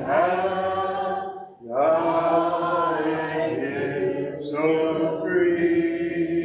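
Church congregation singing a hymn a cappella, with no instruments, breaking briefly for a breath between lines about one and a half seconds in.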